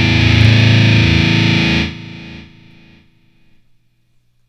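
Ibanez RG seven-string electric guitar with heavy distortion holding sustained low notes. The notes are cut off suddenly a little under two seconds in, and a faint ring fades out over the next second.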